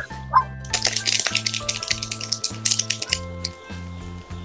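Background music with a steady bass line, overlaid by a rapid rattling, crackling noise that starts about a second in and lasts around two seconds.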